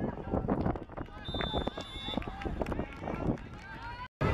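Players and onlookers shouting on an outdoor football pitch right after a goal. A single steady high whistle blast lasting about a second sounds about a second in.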